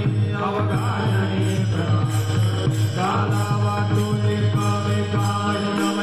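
Men chanting a Varkari devotional bhajan together over a low steady drone, with small brass hand cymbals (taal) striking on a steady beat.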